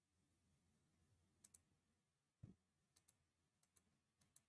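Near silence with faint computer mouse clicks, mostly in quick pairs, and a soft low thump about two and a half seconds in.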